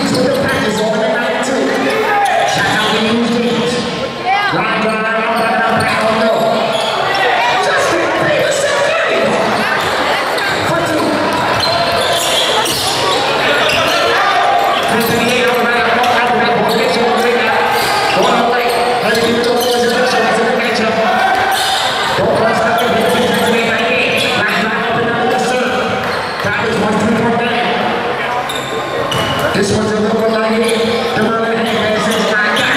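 A basketball being dribbled on a hardwood gym court during a game, its bounces mixed with constant overlapping voices of players and spectators, echoing in a large hall.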